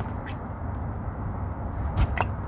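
Used engine oil draining in a steady stream from the oil pan's drain hole into a plastic drain pan, over a low rumble, with a sharp click at the very end.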